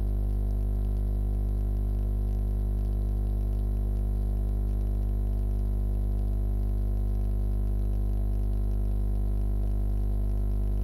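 Steady, unchanging low electronic drone: a few fixed low tones held without any change.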